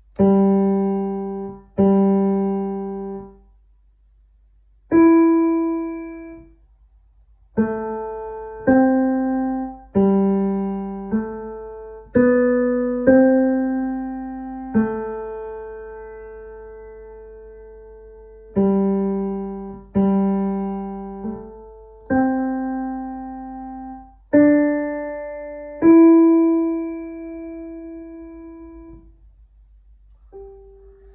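Digital piano playing a slow single-line melody, one note at a time: about sixteen struck notes, each left to fade, with gaps between phrases, a long held note near the middle and a last note ringing out near the end.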